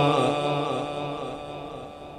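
A man's melodic Quran recitation, the long held closing note of a verse fading away steadily.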